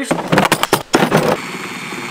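A run of loud, irregular knocks and rattles as work goes on at a combine corn head snoot, then a corded reciprocating saw runs steadily, cutting into the snoot.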